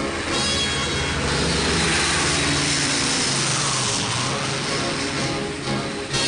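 Propeller airliner's piston engines droning loudly as the plane passes close by, the rushing sound sweeping down and back up in pitch around the middle.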